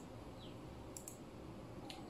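Two faint computer mouse clicks, one about a second in and one near the end, over a low steady hiss.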